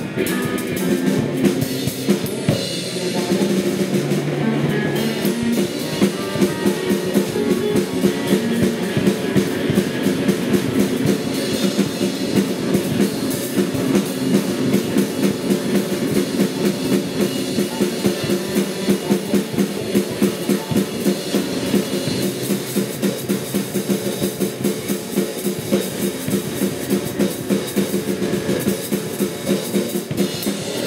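Live drum kit played in fast, busy, steady strokes with bass drum and snare, over sustained droning pitched tones from a second instrument.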